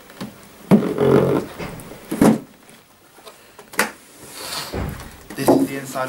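Cardboard model-train-set box being handled and opened: a few knocks and scrapes as the inner box is slid out of its sleeve.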